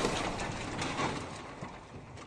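Intro sound effect of many small blocks crashing down and tumbling: a clatter of scattered small knocks that fades away as they settle.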